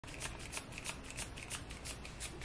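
Plastic trigger spray bottle misting water onto hair in quick repeated sprays, about five or six a second, to re-wet it.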